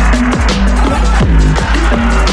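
Old-school tribe/mentalcore tekno from a DJ mix: a fast, heavy kick drum at about three beats a second under a bassline that steps between notes, with ticking hi-hats on top.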